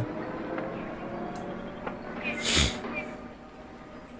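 Hissy soundtrack of an old black-and-white film playing back, with a short, sharp burst of noise about two and a half seconds in, the loudest moment.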